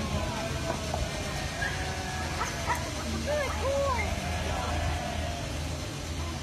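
A dog barking in a few short yelps around the middle, over a low steady rumble.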